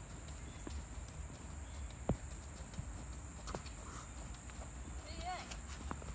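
Faint, irregular hoofbeats of a ridden horse moving on the sand footing of a riding arena, heard as scattered soft knocks.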